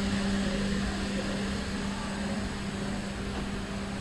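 Automatic cable coiler running with its winding arms turning slowly at a low speed setting: a steady machine hum with a constant low tone under an even whirring noise.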